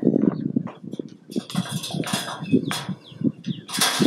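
Giraffe working a paintbrush against paper with its tongue: a run of irregular short licking and brushing sounds.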